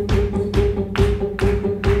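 Instrumental break in a live song: a steady drum beat of about two strokes a second over a held, droning string note.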